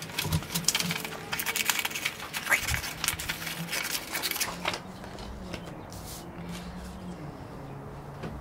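Small craft scissors snipping through paper, with the paper rustling as it is turned, in a quick run of crisp snips that stops about two-thirds of the way through.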